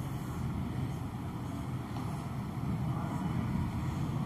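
Steady low background rumble, like room or traffic noise, with no distinct events.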